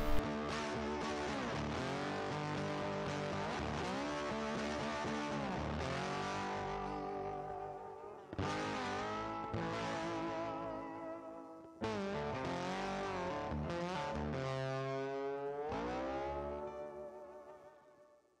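Background music led by a guitar, its notes bending and gliding in pitch, with two sharp new attacks partway through; it fades out near the end.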